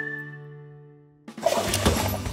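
The closing chord of a cartoon's theme jingle is held and fades out. A little over a second in, a sudden loud rushing noise with sharp clicks cuts in.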